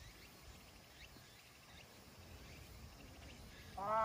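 Quiet outdoor ambience with a few faint bird chirps; near the end a voice starts a held, drawn-out sound.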